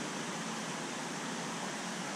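Steady, even hiss of water circulating and bubbling in a large aquarium, with no separate sounds standing out.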